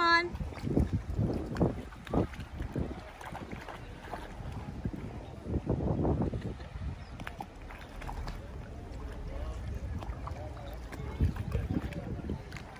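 A small dog wading in shallow seawater, the water sloshing and splashing around its legs in uneven bursts, with wind buffeting the microphone. A short rising pitched call sounds right at the start.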